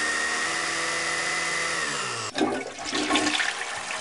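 TIE fighter engine sound effect: a steady howl that drops in pitch a little before halfway and cuts off suddenly, followed by a rough crackling noise.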